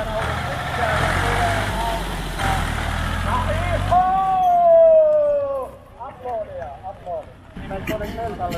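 A tractor engine running as the tractor drives the course, with voices over it. About halfway through the engine sound drops away, and a loud, drawn-out falling tone, the loudest sound, follows.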